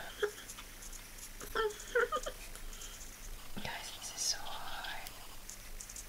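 A woman whispering softly to herself in a few short bursts, with quiet room noise between them.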